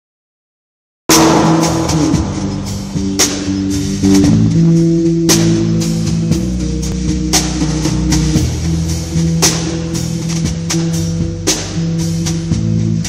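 A live jazz band playing: electric guitar, bass and drum kit, with sustained low bass and guitar notes under sharp drum and cymbal hits. The sound cuts in abruptly about a second in.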